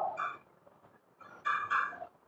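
A bird calling in the background: one short high call just after the start and two more short high calls about one and a half seconds in.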